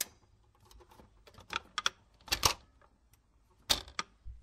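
Sparse, irregular clicks and clattering knocks, with no music, the loudest cluster about halfway through and another just before the end.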